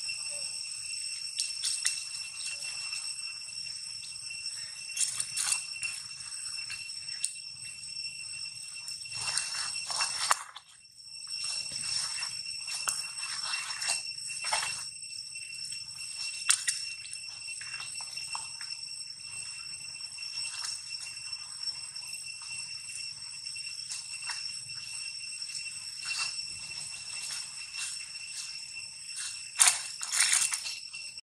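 Insects droning steadily at a high pitch, like a shimmering ring. Over the drone come irregular rustles and scuffs in dry leaves. The drone breaks off briefly about ten seconds in.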